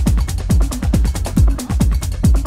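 Techno: a kick drum that drops in pitch on each beat, rapid hi-hat ticks above it, and a steady low bass.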